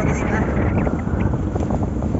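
Wind buffeting the microphone in a steady rumble, with a voice faintly at the start.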